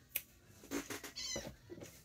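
A cat meowing faintly, one short high call about a second in, over soft clicks of trading cards being handled.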